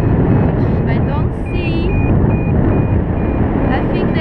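Paragliding variometer beeping in short tones several times a second, the pitch changing and then settling into a row of short high beeps, the sign of the glider climbing in rising air. Steady wind noise rushes over the helmet-mounted camera's microphone.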